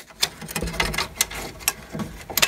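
Irregular light clicks and scrapes as a bent AirPort antenna is pushed and test-fitted into the gap between the metal drive tray and the aluminium front of a Power Mac G5 case.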